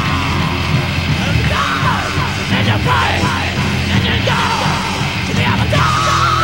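Heavy metal band playing, from a 1985 demo recorded live in a rehearsal room onto a Betamax VCR, with high sliding notes over the dense band sound through most of it.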